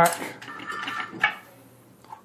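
Curt A20 fifth wheel hitch's steel release handle pulled out and back, the jaw mechanism clanking and rattling with a brief metallic ring and a sharp click about a second in. The jaws are opening to release the kingpin and settle in the ready-to-couple position.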